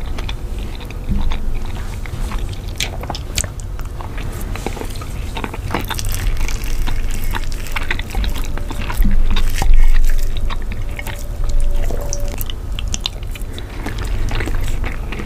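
Close-miked chewing and wet mouth sounds of a person eating a soft pasta dish in meat sauce, a dense, irregular run of sticky clicks and smacks.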